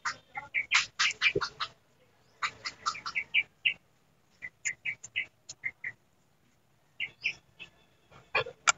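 A small kitchen knife cutting calamansi held in the hand: a run of short clicks and squelches as the blade goes through the rind and pulp. Short, high bird-like calls come and go among the cuts.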